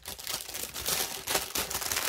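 Plastic packaging crinkling and rustling as it is handled, a steady run of small crackles.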